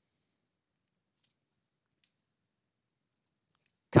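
A few faint computer mouse clicks spread out over near silence.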